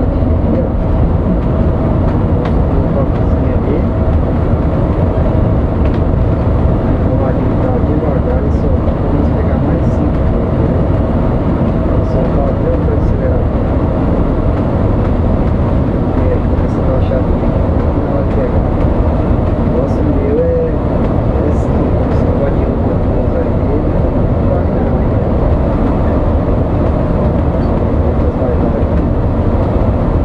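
Steady engine and road noise inside a coach bus's cab while it cruises at highway speed, a constant low rumble with no breaks.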